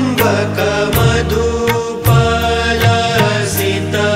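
Devotional Hindu stotram music: a Sanskrit hymn chanted to instrumental accompaniment over a sustained low drone, with sharp percussion strokes about twice a second.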